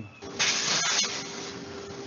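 Roll-o-Matic disposable-apron production line running: a steady hum under a hiss of moving film and air. The hiss starts a moment in, is loudest for about half a second, then settles lower.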